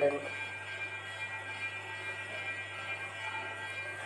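Low steady hum under a faint, even background noise, with a few faint steady high tones; no distinct event stands out.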